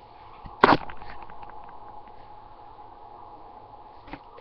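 A single sharp knock about half a second in, followed by a few faint clicks and rustles.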